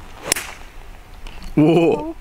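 A 5-utility (hybrid) golf club strikes a ball off the tee: one sharp crack about a third of a second in. About a second and a half in, a person's voice calls out loudly.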